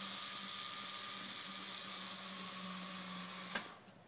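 Cordless electric screwdriver running steadily as it drives a screw into the camera's snout, stopping with a click about three and a half seconds in.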